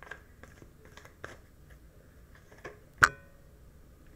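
A deck of oracle cards being shuffled and handled: scattered soft, crisp card flicks and rustles, with one loud sharp click about three seconds in.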